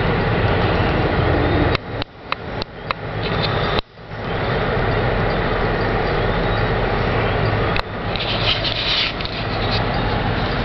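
Steady rumbling cabin noise inside a car with a low hum underneath, from its own engine and the slow-moving traffic. Between about two and four seconds in, it cuts out sharply several times among a few clicks, and it drops once more briefly near the end.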